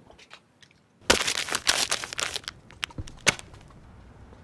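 Foil wrapper being crinkled and crumpled in the hands, a dense crackling run of about two and a half seconds starting about a second in, with a few sharp snaps near the end.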